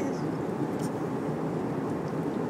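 Airliner cabin noise: a steady, even low rush with no rises or breaks.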